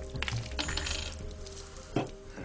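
Light metallic clinking and rattling, a quick cluster of small metal strikes in the first half, over steady background film music.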